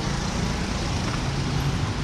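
Steady street traffic noise with a low engine hum.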